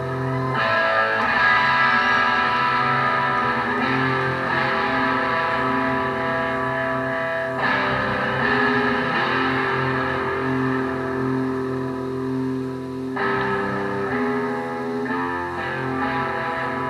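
Rock band playing live on stage: electric guitars ringing out held chords over bass, the chords changing every few seconds.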